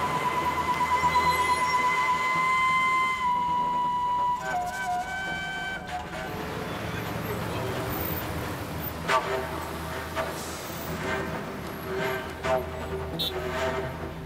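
Car horns sounding in stop-and-go traffic: one long steady honk for about four seconds, then a second horn of a different pitch for about a second and a half, and a few short toots later, over the running of idling traffic.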